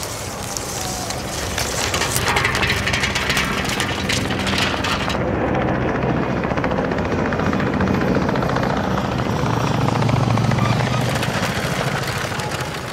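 A crackling rattle of clicks as a strip of film scrapes past a chicken-wire mesh. About five seconds in, it gives way to helicopters flying overhead, a steady rotor chop that grows louder near the end.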